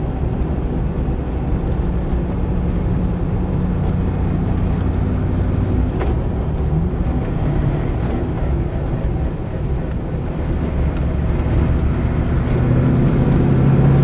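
Land Rover 90's Rover V8 engine running under way, heard from inside the cab with road noise, its drone steady through most of the stretch and growing louder over the last couple of seconds as the revs build.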